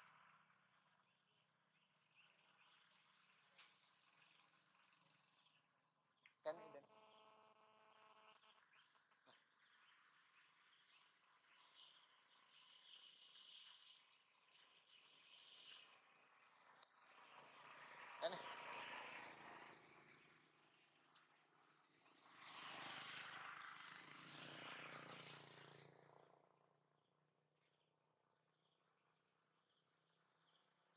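Faint, steady high-pitched insect chirping, repeating evenly, with a short buzz about six seconds in and two louder rushes of noise in the second half.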